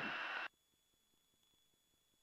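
Near silence: a brief steady hiss cuts off suddenly half a second in, and nothing is heard after.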